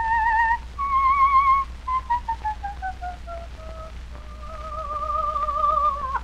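A coloratura soprano singing with a wide vibrato on a 1906 acoustic disc recording, the voice thin as early acoustic recordings captured it, over a steady low hum. She holds a high note, runs down a scale in short separate notes, then holds a long lower note that swells toward the end.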